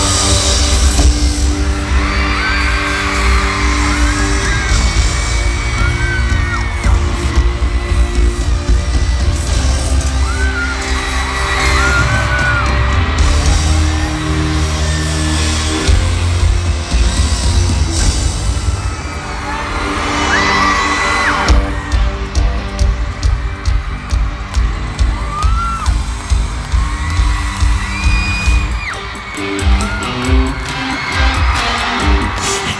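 Live band music played loud through a hall's sound system, with a crowd of fans screaming high over it. A pulsing beat comes in about two-thirds of the way through.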